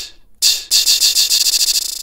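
A short recorded loop played through a looper app's beat repeat, retriggering faster and faster as the loop length keeps halving. At its minimum length it blurs into a steady buzzing tone near the end.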